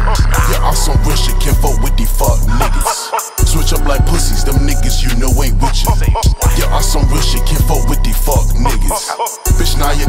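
Hip hop track with a heavy bass beat under rapped vocals. The bass cuts out briefly about three seconds in, again for a moment near the middle, and once more near the end.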